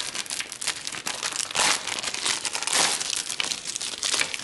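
Thin plastic packaging bag crinkling and crackling as it is handled, in an irregular run with louder stretches about halfway through and again near three seconds.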